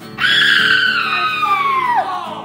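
A long, high-pitched scream that slides slowly down in pitch and drops off near the end, over backing music.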